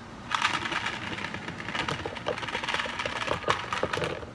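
Iced chocolate latte with ice poured from a pitcher into a tall plastic cup. The ice clinks and rattles in a dense run of rapid clicks that starts just after the beginning.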